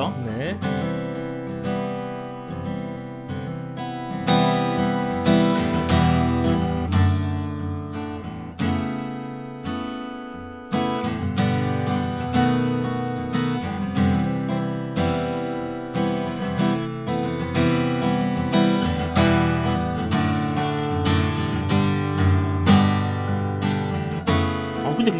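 Taylor AD27 acoustic guitar, with a tropical mahogany top and sapele back and sides, strummed with a pick through a steady run of chords, close-miked with a condenser microphone. The sound is warm, with a brief let-up just before eleven seconds in and then a strong strum.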